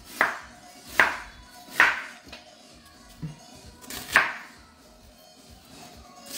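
Kitchen knife chopping on a cutting board, cutting up tomatoes: three sharp strokes a little under a second apart, a pause with a couple of light knocks, then one more stroke about four seconds in.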